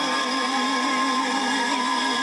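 A male singer holds one long note with an even vibrato, over violins and strings sustaining chords behind him.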